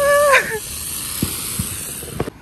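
Ground firework burning on the road with a steady hiss and a few faint pops. A short high-pitched cry sounds at the start and falls away after about half a second.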